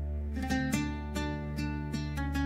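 Slow, calm instrumental guitar music: single plucked notes begin about half a second in, over a low steady drone.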